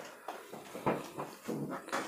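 Several short, quiet vocal noises from a person, not words, spread across about two seconds.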